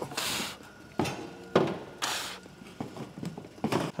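A car bumper cover being lifted and hung on wall hooks: a few scrapes and rustles of the panel against the hooks and the metal wall, with sharp knocks, the loudest about one and a half to two seconds in.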